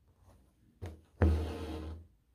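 Embroidery floss being drawn through cotton twill stretched in a hoop: a soft tap a little under a second in, then a sudden, louder rasp with a low hum in it, lasting most of a second and stopping abruptly.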